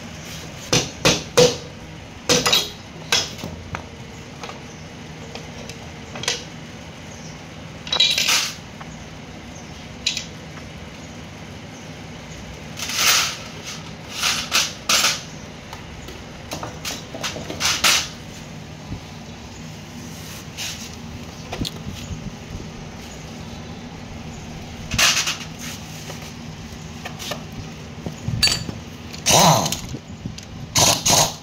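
Rubber mallet tapping a Honda Wave S110's clutch cover to break it free of the crankcase, then scattered metallic clunks and clatter as the cover comes off and is handled. The knocks come several close together in the first few seconds, then singly every few seconds.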